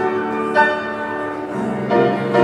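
Grand piano playing slow music, held chords ringing on, with a new high note struck about half a second in and a fresh chord near the end.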